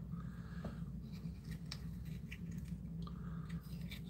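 Small scissors faintly snipping a slit in a leathery snake eggshell, opening the egg at hatch time, in a few soft, scattered clicks over a low steady hum.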